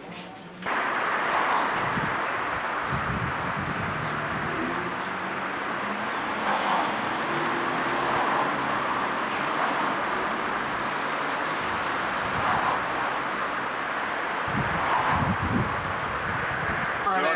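Steady outdoor road noise from passing traffic, starting abruptly just under a second in, with a deeper rumble of a passing vehicle about three seconds in and again near the end.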